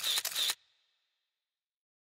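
DSLR camera shutter firing in a rapid burst, several crisp clicks a second, cutting off about half a second in.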